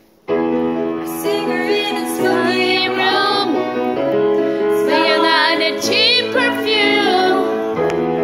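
Piano chords start about a quarter second in, and a woman's singing voice comes in over them about a second in.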